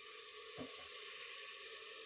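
Faint, steady hiss of a steel saucepan of fresh peas in water just coming to the boil on a gas stove.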